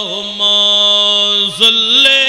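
A man's voice chanting into a microphone in the sung, drawn-out style of a Bangla waz sermon. It holds one long steady note for about a second, then slides up into a new phrase near the end.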